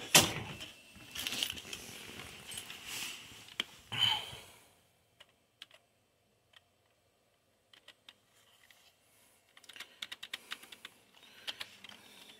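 Computer keyboard keystrokes: a few isolated key clicks, then a quicker run of presses in the last few seconds while moving through the BIOS setup fields. Before that comes several seconds of rustling handling noise with a sharp knock at the very start.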